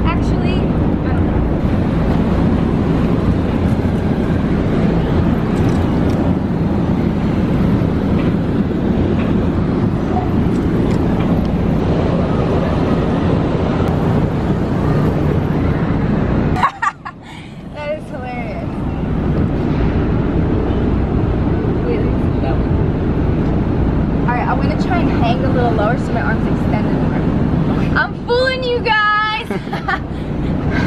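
Wind buffeting the camera's microphone on an exposed rooftop: a loud, steady low rush that drops out suddenly for about a second halfway through. A woman's voice comes through briefly near the end.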